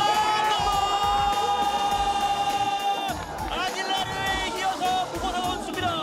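A football commentator's long held goal shout, rising at the start and sustained for about three seconds, followed by excited commentary, over background music.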